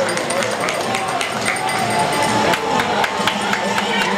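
Crowd noise in a packed competition arena: many voices at once, with scattered sharp clicks throughout.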